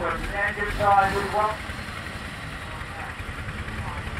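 An engine idling with a steady low throb. A man's voice talks over it for the first second and a half.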